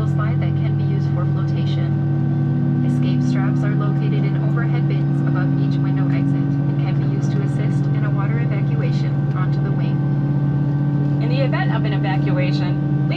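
Steady cabin drone of an Airbus A319 moving on the ground with its engines running, a low hum with several held steady tones, under indistinct voices.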